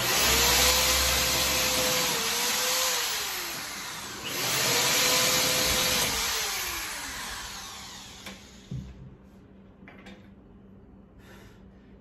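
Corded electric drill running under load into the corner of a white board drawer frame, in two bursts of about three seconds each. In each burst the motor's pitch holds steady, then drops as the burst ends. A few faint knocks follow.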